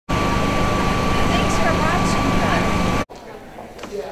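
Loud, steady mechanical hum with a constant high whine, like building air-conditioning equipment, with a few brief chirps over it. It cuts off abruptly about three seconds in, leaving the much quieter room tone of a large hall with a couple of faint knocks.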